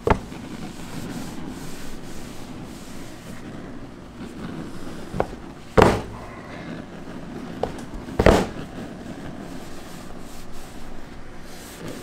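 Cotton-gloved hands rubbing a large mass of warm hard candy on a canvas-covered table to polish it shiny: a steady rubbing, broken by a few sharp thumps about six and eight seconds in.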